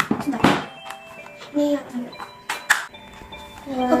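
Plastic toy truck parts clicking and knocking as they are handled on a wooden table: a sharp knock about half a second in and two more in quick succession a little past halfway, over soft background music.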